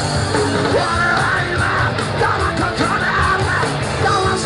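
Live punk band with distorted electric guitars, bass and drums at full volume, and shouted vocals coming in about a second in, recorded from the crowd.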